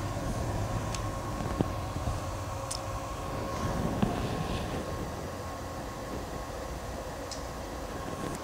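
Cooling fans of a Growatt SPF5000ES inverter/charger running steadily under a heavy load of about 4.1 kW, which is 82% of its output. They make a continuous whirring hum with a faint steady tone and a few light ticks. The load is a 240 V water-heater element heating water in a bucket.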